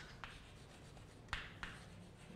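Chalk writing on a chalkboard: faint scratching with a few short taps of the chalk, the sharpest a little past halfway and another right after it.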